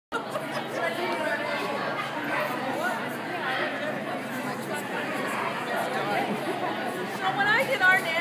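Indistinct chatter of several people echoing in a large indoor hall, with a louder, rising high-pitched call just before the end.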